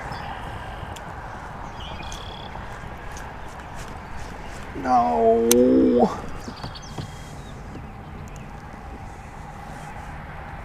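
A steady outdoor hiss, with a man's drawn-out wordless vocal sound, like a groan, lasting about a second and starting about five seconds in.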